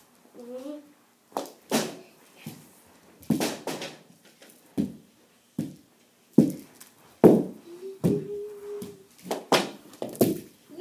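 Knee hockey play: a mini hockey stick striking a ball, which knocks against the floor, wall and net. About a dozen sharp, irregular knocks, with short wordless vocal sounds in between, one of them a held note near the eight-second mark.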